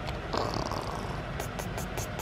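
Long-haired cat purring steadily while being stroked as it sleeps.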